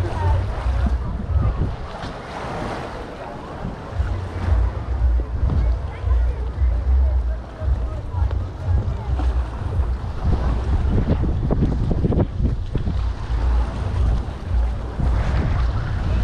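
Wind buffeting the microphone in uneven gusts, with seaside ambience of water and distant voices underneath.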